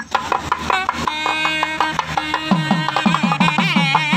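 Nadaswaram playing a melody in sustained, wavering reed notes, accompanied by a thavil barrel drum. The drum settles into a steady beat of about three strokes a second from about halfway through.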